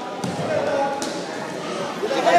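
Voices echoing in a large gymnasium, with a dull thud just after the start and a sharp slap about a second in from wrestlers grappling on the mat.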